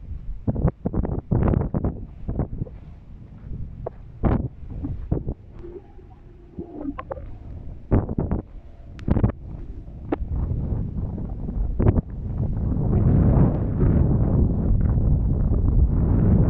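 Wind buffeting the microphone in irregular gusts, giving a rough low rumble with sharp bursts, then settling into a steadier, louder rush from about 13 seconds in.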